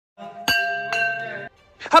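A metal puja bell struck twice with a wooden mallet, about half a second apart; each strike rings on with several clear tones, and the ringing cuts off suddenly about a second and a half in.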